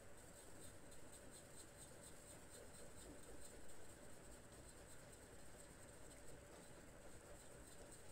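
Near silence: faint room tone with soft, irregular scratchy sounds.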